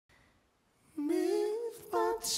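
A woman's voice humming a slow, wordless melody on its own, starting about a second in.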